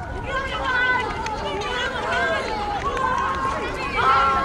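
Several children's voices shouting and calling over one another during a street football game, with a few light taps scattered through.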